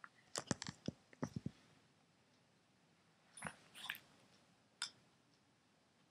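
Small clicks and knocks of the plastic grip of a Planet Eclipse Etha paintball marker being handled: a quick run of sharp clicks in the first second and a half, a few more around the middle, and one more near the end.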